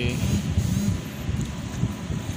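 Low steady rumble of a boat's engine under way, with wind buffeting the microphone.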